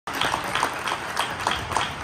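Audience applauding, with clapping in a steady rhythm of about three claps a second.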